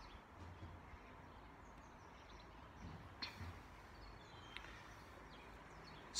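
Near silence: faint outdoor background with a few faint bird chirps and a couple of soft clicks.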